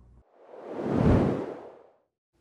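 A whoosh sound effect that swells to a peak about a second in and then fades away, a transition in a TV title sequence.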